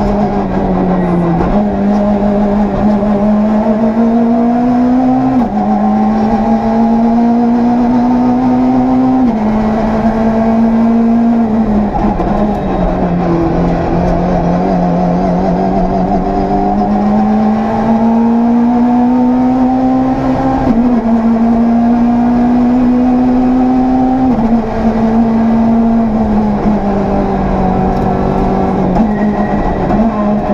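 Citroën C2 R2 rally car's four-cylinder engine heard from inside the cabin, running hard at high revs: the pitch climbs slowly and drops suddenly at each upshift, several times, and around the middle the revs fall away and build back up.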